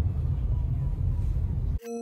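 Low, rumbling outdoor noise picked up by a phone's microphone, with no distinct bangs. It cuts off abruptly near the end and steady, sustained ambient-music tones take over.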